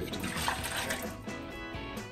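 Simple syrup being poured from a measuring pitcher into a large, nearly empty plastic container: a splashing pour, strongest in the first second, over background music.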